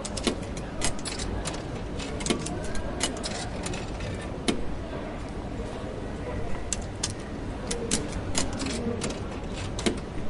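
Railway station ambience: a steady low rumble with faint, indistinct voices, broken by frequent irregular sharp clicks and knocks, several a second at times.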